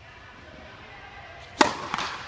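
Tennis racket striking the ball on a serve: one sharp, loud crack about a second and a half in, echoing off the indoor hall, followed by a softer knock just after.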